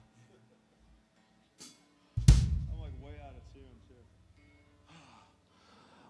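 A single drum-kit hit about two seconds in, its low end ringing out over a second or two, on an otherwise quiet stage; a faint voice follows briefly.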